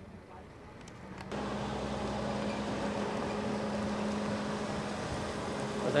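Quiet outdoor ambience with a few faint ticks, then, about a second and a half in, a steady hum from an idling vehicle engine begins suddenly and runs on at an even level.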